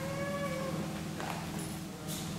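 A child's high, drawn-out vocal call lasting under a second, followed about a second in by a soft thump on the gym mats.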